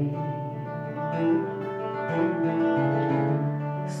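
Acoustic guitar played live: a short instrumental passage of ringing chords that change a few times between sung lines.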